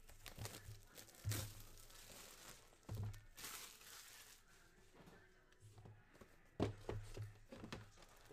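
Hands opening a cardboard box and handling packaging: tearing and plastic crinkling with a few soft knocks, in irregular bursts, with a quick run of knocks near the end.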